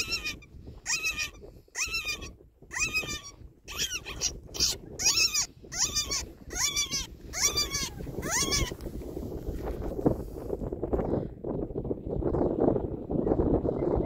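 About ten shrill animal cries, each a short note that rises and then falls, repeated roughly once a second and stopping a little under nine seconds in.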